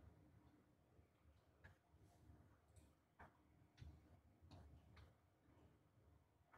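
Near silence of a quiet room, broken by about six faint, irregularly spaced ticks or taps.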